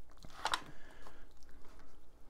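Hands rubbing whole grain mustard into a raw corned beef brisket in an aluminium foil pan: soft, wet squishing and handling noises, with one sharper sound about half a second in.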